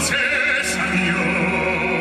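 Baritone singing one long held note with wide vibrato over a live string orchestra that sustains a low chord beneath him.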